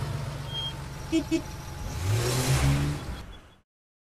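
Van sound effect: an engine runs, two short horn toots sound about a second in, then the engine revs up with a passing whoosh and the sound cuts off suddenly a little after three and a half seconds.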